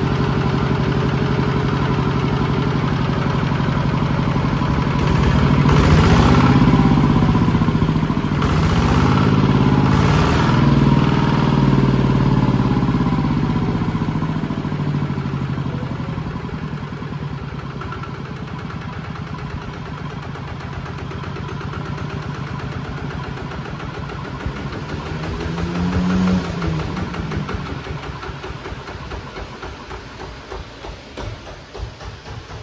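Small Kubota single-cylinder diesel engine running. It is revved up twice a few seconds in, with the pitch rising and falling, then settles to a lower, steady idle, with one short rev near the end.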